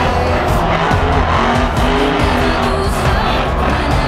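A monster truck's engine running at high revs, loud and mixed over a song's backing music.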